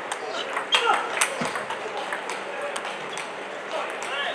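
A few sharp clicks from a celluloid table tennis ball being struck and bouncing as a rally ends, the loudest just over a second in.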